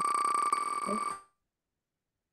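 A steady, high electronic tone that cuts off after about a second, followed by silence.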